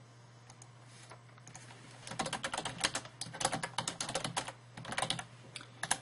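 Computer keyboard typing: a quick run of keystrokes starting about two seconds in, over a steady low hum.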